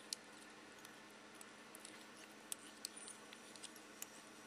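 Near silence with a faint steady hum, broken by a few soft, scattered clicks: small handling sounds of fingers, thread and fly-tying materials at the vise.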